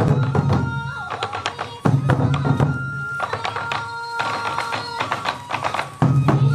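Sansa odori festival music: hand-held taiko drums beaten in a quick, steady rhythm, with a bamboo flute holding high notes over them. The drums drop back briefly about a second in and come back strongly just before the two-second mark.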